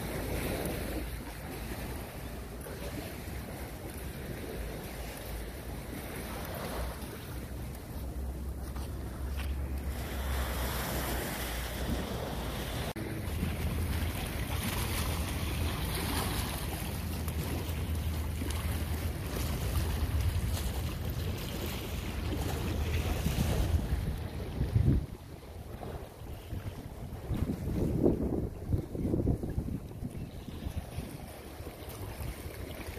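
Wind buffeting the microphone over ocean surf, with a steady low engine drone through the middle stretch from a boat out on the water. Near the end there are gusty bursts of wind noise.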